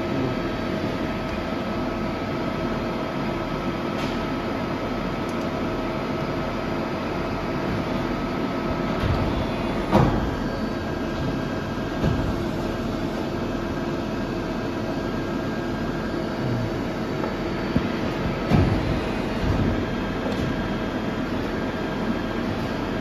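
Steady machine hum of a TRAUB TNA 300 CNC lathe standing powered up, with a few level tones running under it. A few short knocks come about ten seconds in, again about two seconds later, and near the end.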